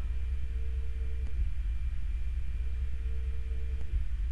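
Steady low background rumble with a faint, thin hum above it.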